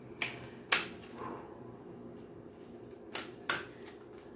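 A deck of cards being handled and shuffled, with four short sharp clicks, the loudest one under a second in.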